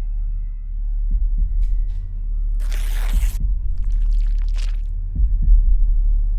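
Heartbeat sound effect over a low droning hum, with pairs of low thumps about a second in and again about five seconds in, standing for the patient's racing heart in his fear of the needle. A short burst of hiss comes midway.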